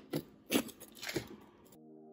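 A few sharp knocks and clicks of kitchen things being handled and put down on a countertop. Soft, steady background music comes in near the end.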